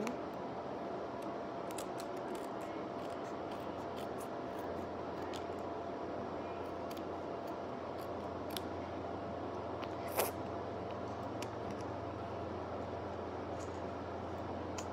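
Small scissors snipping at a plastic jelly pouch: scattered brief clicks over a steady hiss, with one louder snip about ten seconds in.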